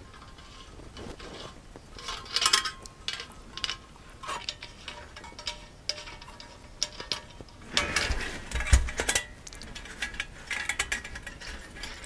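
Light metallic clicks and rattles of titanium stove panels and a brass gas-burner fitting being handled while the burner is screwed onto its remote gas feed line. There is a louder clatter with a knock about eight seconds in.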